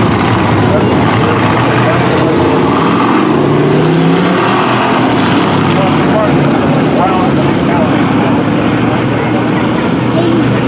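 Several hobby stock dirt-track race cars' engines running together at low speed, a steady loud drone whose pitch slowly rises and falls as the cars circle the track at a slow caution pace.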